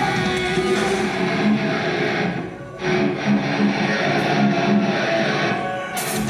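Metal band playing live, heard from the audience, with a distorted electric guitar riff to the fore. About two and a half seconds in the band briefly stops, then comes back in.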